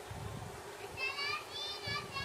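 Children's voices calling out, with two high, drawn-out calls in the second half.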